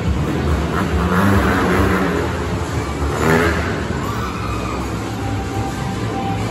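Motorcycle engines revving inside a steel-mesh globe of death, the sound swelling and falling as the riders circle, with a sharp rise about three seconds in.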